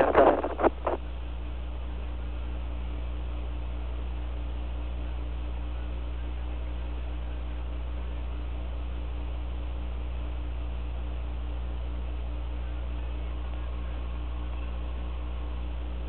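Steady hiss and low hum of the Apollo 11 air-to-ground radio link between transmissions, with a faint steady tone coming in near the end.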